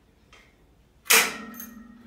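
A single loud metal clank about a second in as the cable machine's adjustable pulley carriage is dropped to its lowest position on the steel column, followed by a ringing tone that fades over about a second.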